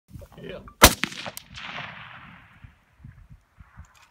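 A rifle shot about a second in, very loud and sharp, followed by fainter cracks and a rolling echo that dies away over the next second or two.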